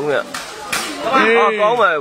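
Mostly a man's voice talking over a sepak takraw rally, with a couple of sharp knocks in the first second from the takraw ball being kicked.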